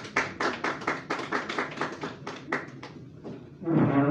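A small audience applauding, the separate claps distinct, thinning out and stopping about three seconds in.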